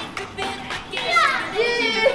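High-pitched voices squealing and calling out over music in a large hall, with one sharply falling squeal about a second in.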